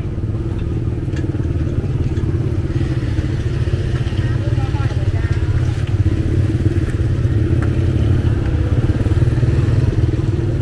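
Busy street-market ambience: people talking among the food stalls over a steady low rumble, with motor scooters riding slowly through the crowd.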